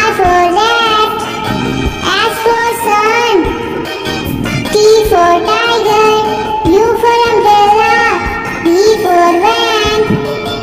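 A children's alphabet phonics song: a high-pitched, childlike sung voice carrying a simple melody over a bright backing track with a steady beat.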